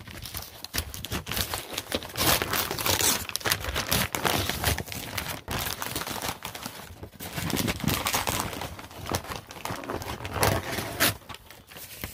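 Brown kraft paper wrapping being torn open and crumpled by hand: a dense run of irregular rustling, crackling and ripping.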